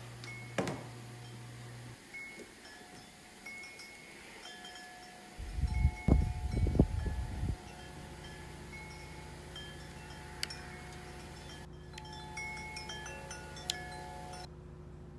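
A knock as a camera is set down on a counter, then scattered short chime-like tones at several pitches. A loud low rumble starts about five seconds in and cuts off abruptly two seconds later, leaving a steady low hum.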